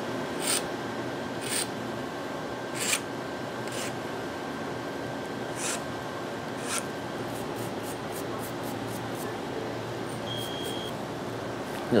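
Metal hand tool scraping and clicking against the end of a corrugated coaxial cable while a connector is fitted. Sharp clicks come roughly once a second, then a quicker run of small ticks and a brief high tone near the end, over the steady hum of equipment racks.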